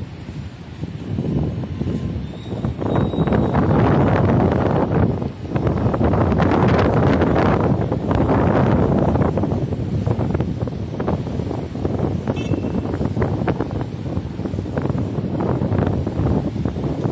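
Wind buffeting the microphone in gusts, a loud, low rumbling noise that swells strongest from about three to nine seconds in, with a brief lull near five seconds.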